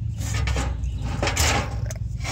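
Light knocks and scraping from a steel round bar being handled against the truck frame, over a low steady hum.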